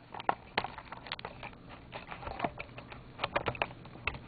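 Handling noise from a camcorder being taken off its tripod: irregular sharp clicks and light knocks, with a quick cluster of them near the end.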